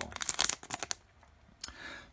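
Foil booster-pack wrapper crinkling and tearing as it is torn open at the top: a run of sharp crackles for about the first second, then a fainter rustle near the end.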